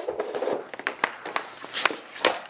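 Hockey stick and rubber pucks on a plastic shooting pad: a short scrape, then a few sharp clacks, the loudest near the end.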